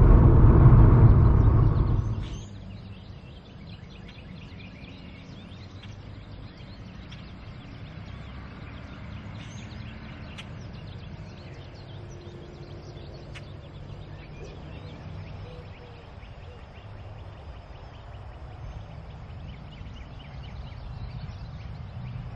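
Car driving on a paved country road: engine and tyre rumble for about two seconds, then it cuts off suddenly to quiet outdoor ambience with a low steady background and a few faint short chirps.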